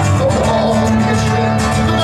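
Live acoustic rock music: violin and guitar playing steadily, with a male voice singing into a microphone.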